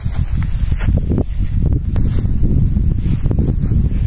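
Wind buffeting the microphone: a steady low rumble, with a few faint short rustles and knocks.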